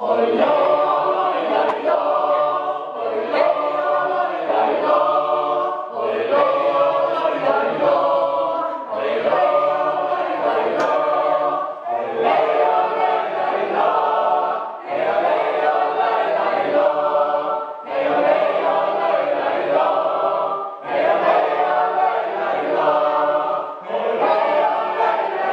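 A mixed group of men and women singing a Sami joik together, repeating short phrases on vocable syllables that carry no meaning, with a brief break for breath about every three seconds.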